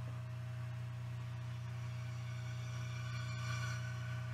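A steady low electrical hum with a faint hiss, with faint high tones drifting in around the middle.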